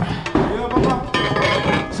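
A galvanized steel framing bracket clinking and knocking against a timber beam and post as it is pushed up and seated by hand, with several sharp light metallic knocks.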